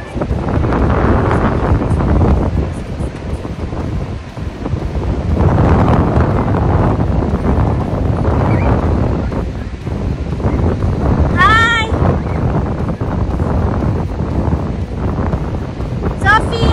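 Strong, gusty wind buffeting a phone's microphone in surges. About three-quarters of the way through, one short high-pitched call rises and falls.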